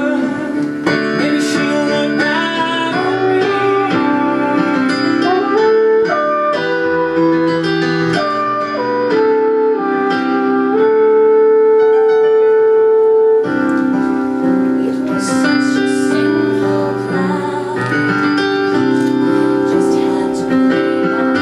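A live vocal duet, a man and a woman singing a song with piano accompaniment. About eleven seconds in, one note is held for over two seconds.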